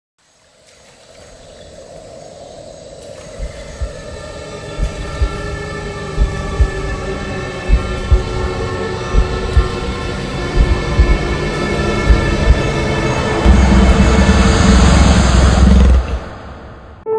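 Logo-sting intro music: sustained synth chords swell up from silence, with low drum hits at irregular intervals growing louder. It builds to a heavy climax near the end and cuts off suddenly.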